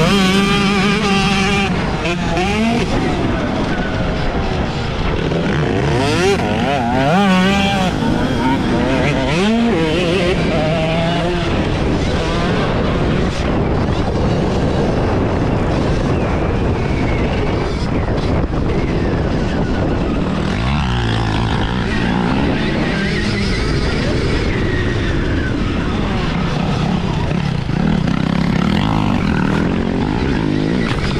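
Stark Varg electric motocross bike being ridden. Its motor whine rises and falls with the throttle through the first dozen seconds, over steady wind noise on the microphone.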